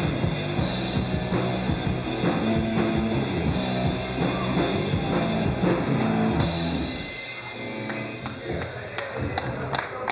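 Live rock band (drum kit, bass and guitar) playing the final bars of a song, which ends and dies away about seven seconds in. A few scattered claps start near the end.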